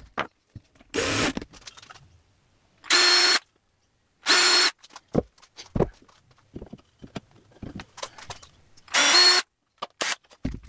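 Cordless drill running in short bursts of about half a second, three of them with a steady whine, amid light clicks and knocks of handling.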